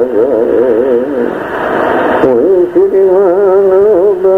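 A voice singing slow, wavering sustained notes. A brief hissy stretch comes about a second in, and then a long held note sounds over a steady low drone.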